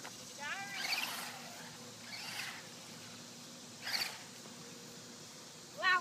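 A small electric RC truck driving on asphalt some way off, heard as a faint steady hum, with a brief louder high-pitched burst about four seconds in.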